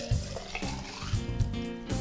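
Drink mix poured from one glass into another to mix it, a liquid pour over background music with a steady beat.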